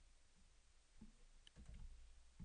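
Near silence broken by a few faint clicks from a computer keyboard and mouse, about a second in and again around a second and a half.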